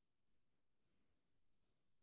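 Near silence with a few faint keyboard clicks, spaced irregularly, as code is typed.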